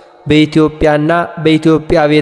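A man chanting a recitation in short phrases on held, level notes, with brief breaks between them. It starts after a short pause at the very beginning.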